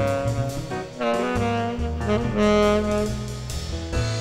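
Jazz septet playing: saxophone and brass horns sounding a harmonized line over double bass, with a brief dip about a second in.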